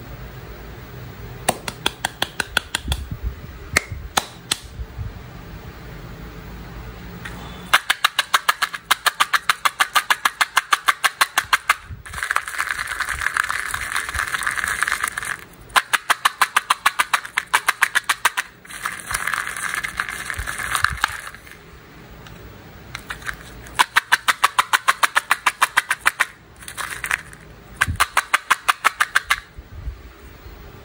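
Candy-coated chocolates rattling and clicking against hard plastic cups as they are poured and shaken. They come in runs of rapid, even clicks a few seconds long, with rattling stretches between them.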